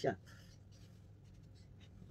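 Black felt-tip marker drawing on paper: a few faint strokes of the tip scratching across the sheet.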